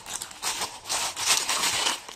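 Plastic courier mailer bag crinkling and rustling as it is handled and opened, in uneven surges that are loudest in the second half.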